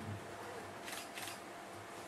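Two short clicks of laptop keys about a second in, over faint room noise.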